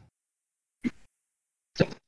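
Near silence, broken by one short voice or mouth sound about halfway through and a brief voice sound just before the end.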